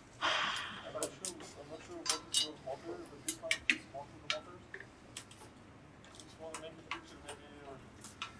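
Irregular metal clicks and ticks of an Allen key seating in and turning socket-head bolts as a front rack's mounting bolts are tightened down, most of them in the first half.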